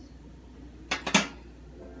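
A metal utensil clanking against a cooking pot: a quick run of sharp clanks about a second in, the last one loudest, over a low steady room hum.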